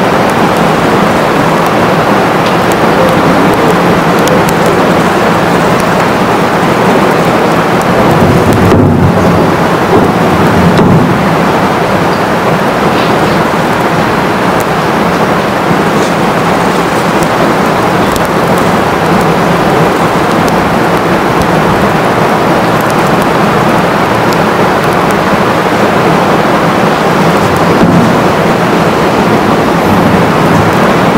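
Loud, steady rushing noise of heavy rain, with a slight swell about eight to eleven seconds in.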